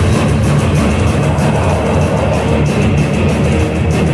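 A death-thrash metal band playing live at full volume: distorted electric guitars over bass and drums, dense and continuous.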